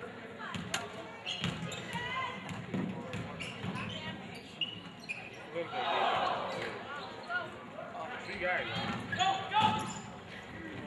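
A basketball dribbled on a hardwood gym floor, its bounces echoing in the hall over the voices of spectators and players. The voices swell about six seconds in.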